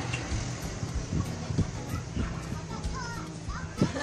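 Scattered clicks and clinks of shellfish shells against steel bowls as people eat with their hands, with a sharper clink near the end, over low voices and faint background music.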